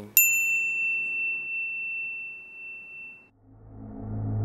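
A single bright, high ding sound effect that rings out and fades over about three seconds. A low droning hum swells in near the end.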